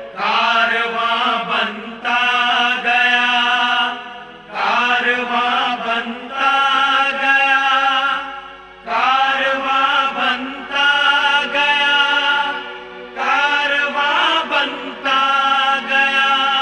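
Chant-like singing: about eight sung phrases of roughly two seconds each, falling in pairs with short breaths between, over a steady held drone.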